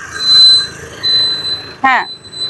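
A high electronic beep sounding twice, each about half a second long, over the scooter's quiet running; a brief voice cuts in near the end.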